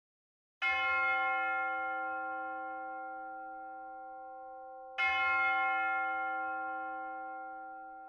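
A bell struck twice, about four seconds apart, each stroke ringing on and fading slowly.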